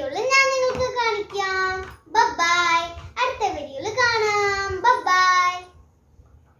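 A young girl singing in four drawn-out phrases with long held notes that slowly fall in pitch. She stops shortly before the end.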